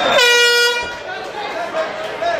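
Air horn sounding one short, steady blast of about half a second, signalling the start of the round. Crowd chatter runs underneath it.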